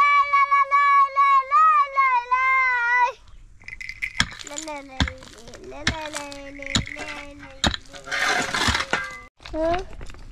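A young boy sings a long, loud, high note, held for about three seconds with a slight waver. After it a small child's voice goes on softly, with five sharp clicks about a second apart.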